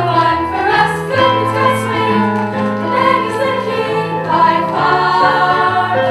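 A chorus of young female voices singing a musical-theatre song together over an instrumental accompaniment with long held bass notes.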